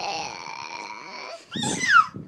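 Pit bull whining: one long, high, steady whine, then a louder whine that falls in pitch near the end.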